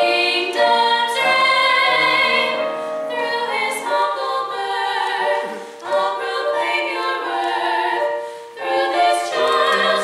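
A trio of women's voices singing together in sustained phrases, with brief breaths between phrases about six and eight and a half seconds in.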